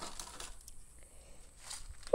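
Faint, scattered light clicks and rustling.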